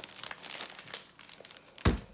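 Plastic wrapper of a roll of sandwich cookies crinkling as it is handled, followed near the end by a single loud thump as an item is set down on a table.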